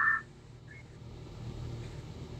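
The tail of a spoken word at the very start, then faint, steady low background hum with no other sound.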